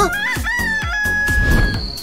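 A rooster crowing sound effect: one crow that rises in pitch and then holds a long steady final note, over upbeat background music.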